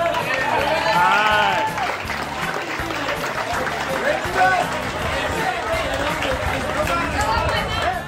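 Overlapping chatter of a group of teenage boys and men talking together, with music underneath.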